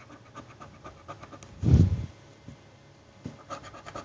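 Coating being scratched off a paper scratch-off lottery ticket in quick short strokes, with a pause in the middle. A brief low bump about two seconds in is the loudest sound.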